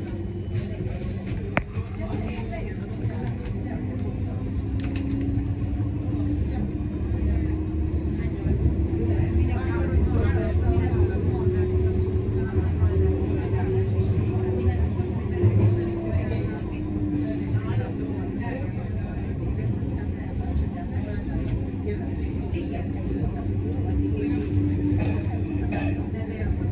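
Siemens Combino NF12B Supra tram running, heard from inside the car: a steady low rumble of the wheels on the rails, with the traction drive's whine rising in pitch for several seconds as the tram picks up speed, then falling and levelling off.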